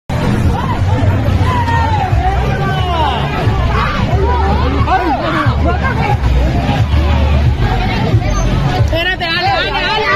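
A crowd of voices talking and calling out over one another, with a heavy low rumble underneath, recorded on a phone at a nighttime street scene of an assault. Near the end, high, wavering voices rise above the crowd.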